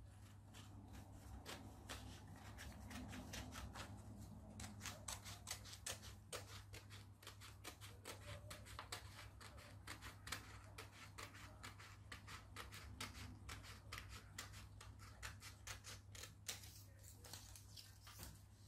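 Scissors cutting a long strip from a sheet of A4 printer paper: a faint, quick, steady run of crisp snips, several a second, as the blades work along the sheet.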